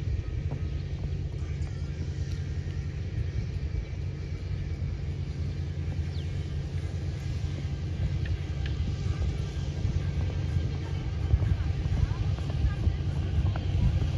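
Steady low engine rumble from a motor vehicle running nearby, throughout, a little louder near the end.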